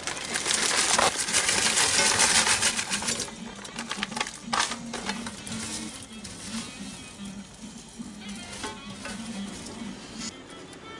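A bag being handled, crinkling and rustling loudly for about three seconds, then stopping. Faint background music with a low melody follows under quieter handling sounds.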